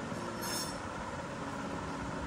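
Steady background hum and hiss, with a brief high-pitched squeal about half a second in.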